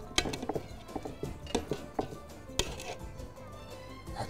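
A metal spoon clinks and scrapes against an aluminium pot while cooked vermicelli is scooped out, in light, irregular clicks.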